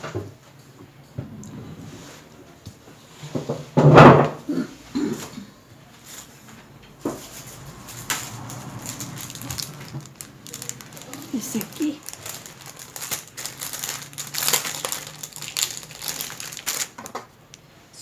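Crinkling and rustling of craft materials being handled, a dense run of small crackles through the second half. A louder voice-like sound comes about four seconds in.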